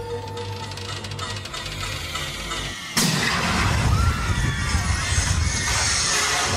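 Dramatic promotional soundtrack: eerie music with held tones, then about three seconds in a sudden loud crash that runs on as a dense rushing noise.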